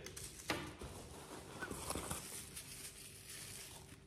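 Handling noise: a light knock about half a second in, then soft rustling and small clicks as a vintage Kenner Super Powers plastic action figure is lifted out of a cardboard box and turned in the hands.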